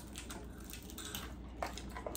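Quiet eating sounds: scattered wet smacks, squishes and chewing as seafood boil is eaten and picked apart by hand.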